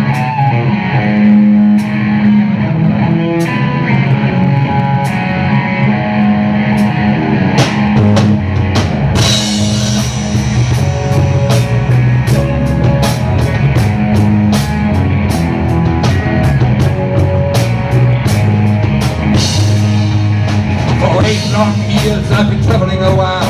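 Live rock band playing an instrumental passage on electric guitars, bass guitar and drum kit. The drums are sparse at first, then settle into a steady beat with cymbals about eight seconds in.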